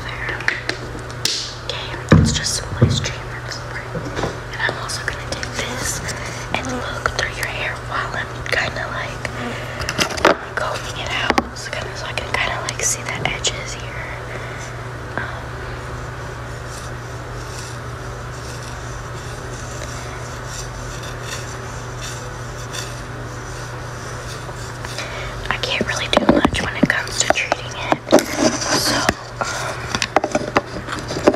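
Whispering close to the microphone, with scattered scrapes and taps of an object being handled near it, busier near the end. A steady low hum runs underneath.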